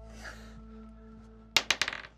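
A die rolled on the table, clattering in a quick run of sharp clicks about one and a half seconds in, over faint background music. It is the roll for a player's insight check.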